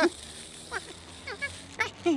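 A few short, high-pitched squeaky vocal sounds from a cartoon monkey, over a faint low hum.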